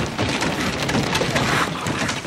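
Debris from a collapsed ceiling falling and scattering over the floor and file boxes, a dense run of many small hits.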